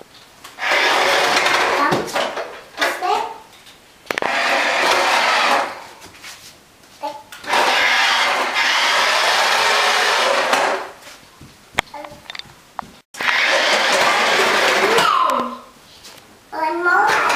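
Toy radio-controlled car's small electric motor and gears whirring in four runs of one to three seconds each, stopping between runs.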